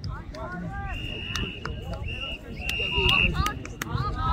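Children and adults calling and talking across an outdoor rugby pitch, with a few sharp knocks. Through the middle a high, steady tone is held three times in quick succession.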